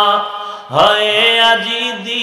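A man chanting in a melodic sung tune, amplified through microphones. A long held note fades out just after the start, and under a second in a new phrase begins, stepping up and down in pitch.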